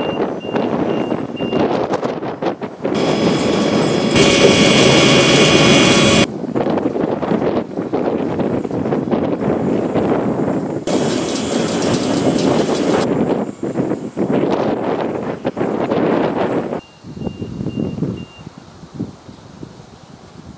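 Utility truck engine running and driving off, with a faint regular high beeping near the start and again near the end. Twice, for a few seconds each, a loud high whine rises over it and cuts off suddenly.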